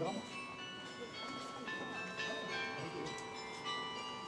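Carillon bells played from the baton keyboard, ringing out a quick folk tune. Notes are struck in fast succession, and each one rings on under the next.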